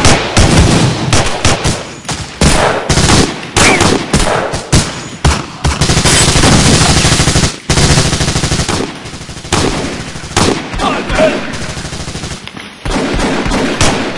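Automatic gunfire in long rapid bursts, shot after shot with hardly a pause, dipping briefly about seven and a half seconds in.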